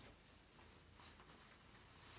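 Near silence, with a faint soft rustle about a second in as the cloth amice's tied strings are tightened and the fabric is smoothed over the chest.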